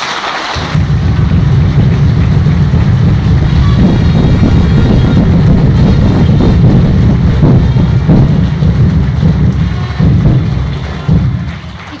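Audience applauding in a hall, loud, with a heavy low rumble under the clapping. It swells within the first second, holds, and dies away shortly before the end.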